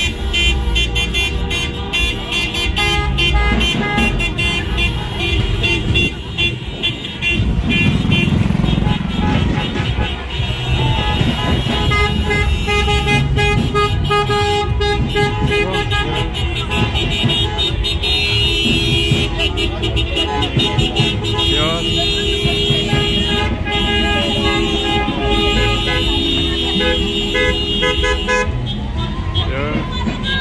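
A slow caravan of cars honking their horns, some in long held blasts, over running engines and shouting voices.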